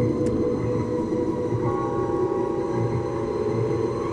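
Miniature railway train running on the track, unseen in the tunnel. It is a steady sound of several sustained tones over a slow, repeating low beat.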